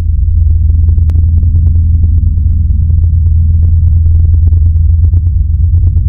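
Loud, steady, very deep rumbling drone with faint crackles scattered over it, the kind of dark ambient sound laid under a horror intro.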